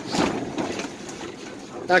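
Storm wind blowing against the canvas walls of a pop-up camper, heard from inside as a steady rushing noise, a little louder in the first half second.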